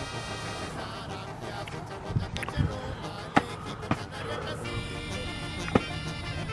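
Background music with steady held notes, with a few short sharp knocks over it.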